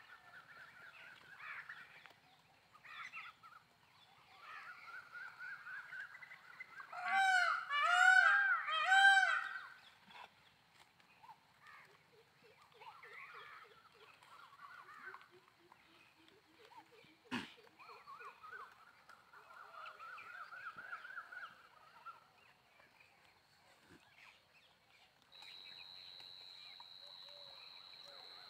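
Goats bleating: scattered quavering bleats, with three loud ones in quick succession about seven to nine seconds in and lower, fainter calls after them. A sharp click comes about two-thirds of the way through.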